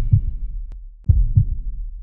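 A logo sting's sound effect: two pairs of deep thumps, each pair a quarter second apart and the pairs about a second apart, with a faint click between them.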